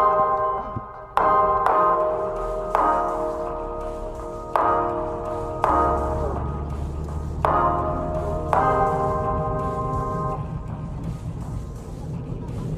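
Background music: a series of struck, chime-like chords, each ringing out and fading, with a deep bass coming in about halfway through.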